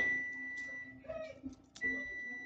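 Faint, soft clicks of copper pennies being pushed around and picked from a pile on a felt cloth, with one sharper click near the end. A thin steady high-pitched electrical whine sits underneath.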